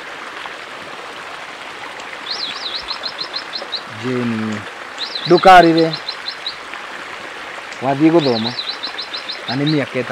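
A man and a woman talking in short exchanges in Kikuyu, over a steady rushing background. Three times, a bird sings the same high phrase: a quick up-and-down note followed by a run of short, rapid notes.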